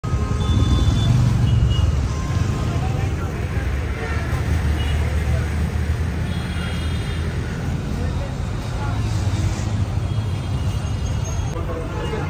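Busy roadside street noise: traffic running past under the chatter of a crowd of people talking, with a few short tones cutting through.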